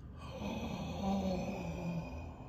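A person's low, drawn-out hum of awe, held for about a second and a half and sliding slightly down in pitch, with breath behind it.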